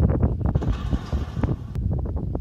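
Wind buffeting the microphone, a loud low rumble, with scattered knocks and thumps on top.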